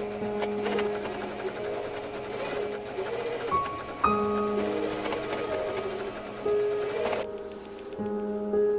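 Electric sewing machine stitching through denim along a zipper, running steadily and stopping about seven seconds in. Background music plays underneath.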